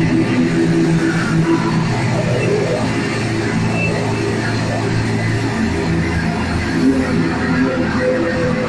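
Live band playing loud, droning music: electric guitar notes held and sustained over a dense wash of sound, with no clear drum beat.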